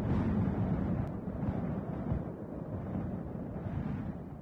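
A low, steady, wind-like rumble with a faint click about a second in: a rumbling sound effect under an animated production logo.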